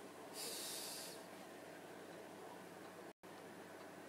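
A short, faint breathy hiss, like a snort or forceful exhale, about half a second in and lasting under a second, over a faint steady background. The sound cuts out completely for an instant just after three seconds.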